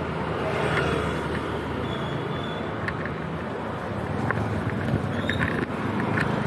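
City street traffic: an auto-rickshaw and motorbikes running close by, a steady low rumble with a few short faint high sounds through it.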